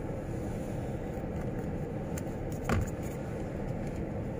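Steady low rumble of a car idling, heard inside the cabin while stopped, with one short knock near the end.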